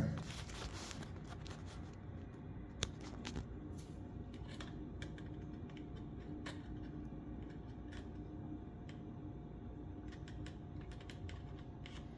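Handling noise: faint, scattered small clicks and taps, irregular and a second or so apart, as a hand handles a plastic pH meter standing in a paper cup. A faint steady hum runs underneath.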